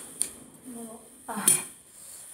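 A metal fork clinking against a ceramic bowl of noodles: a sharp click just after the start and another about three-quarters of the way through, with a short murmured voice between them.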